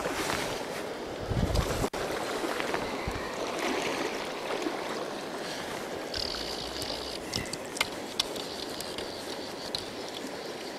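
A hooked trout splashing at the surface, then steady river and rain noise as the fish is played on a fly rod. About six seconds in, a fly reel's ratchet drag buzzes briefly, with a few sharp clicks after it.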